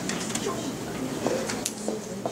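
Indistinct voices murmuring in a room, broken by a few short, light clicks and clinks.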